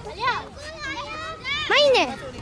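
Children's voices calling and shouting during outdoor play, ending in one loud high-pitched shout near the end.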